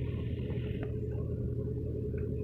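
Tractor engine running steadily with a low rumble; a higher hiss over it stops a little under a second in.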